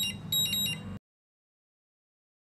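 An electronic alarm beeping: short bursts of high, steady beeps repeating about twice a second, cutting off abruptly about a second in.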